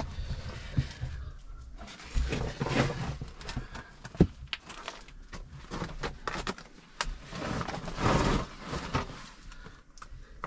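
A person crawling over rough cave rock: scuffing and scraping of clothing and body against the rock, with irregular rustles and a couple of sharp clicks about four and seven seconds in.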